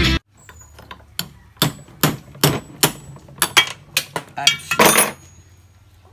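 Metal pump parts and hand tools being handled on a workbench while a Jetmatic pump is taken apart: about a dozen irregular sharp knocks, stopping about five seconds in.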